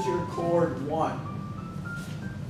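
Electronic keyboard notes played one after another, single steady tones stepping up in pitch across the two seconds, with a voice briefly in the first second.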